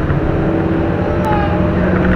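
Steady low drone of a moving bus heard from inside the cabin: engine and road noise. There is one short tick a little past the middle.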